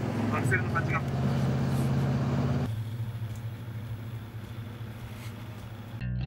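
A van's engine and road noise heard from inside the cabin while driving: a steady low drone. About two and a half seconds in, the sound drops to a quieter, thinner drone.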